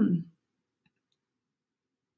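A woman's short, thoughtful 'hmm' that ends within the first half-second, then near silence with a couple of faint ticks.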